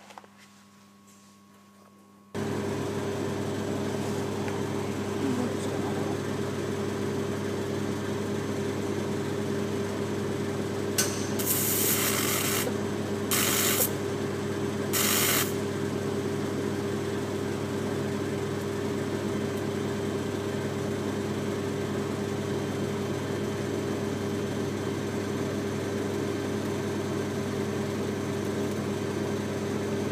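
TIG welding arc from a Miller Syncrowave 300, kept tight for a fusion weld on the edge of thin stainless sheet. It strikes about two seconds in and runs as a steady buzz with a low hum, with a few short bursts of brighter hiss between about 11 and 15 seconds.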